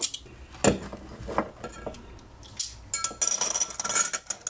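Glassware clinking and being set down on a tiled counter: one sharp clink under a second in, a few lighter knocks, then a quick run of clinks near the end with a brief ring of glass.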